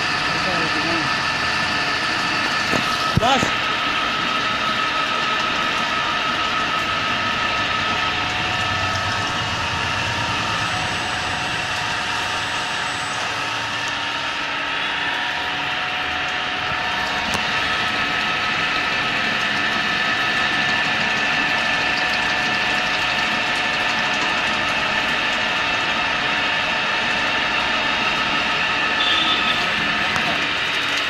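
CNC milling machine's spindle and end mill cutting a slot in a metal ring, a steady machining whine with several held tones. There is a brief knock about three seconds in.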